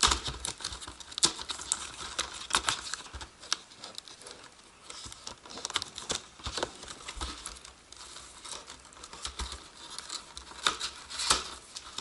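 Cardboard webcam box being handled and pried open: irregular crackles, scrapes and clicks of cardboard flaps and the plastic packaging inside.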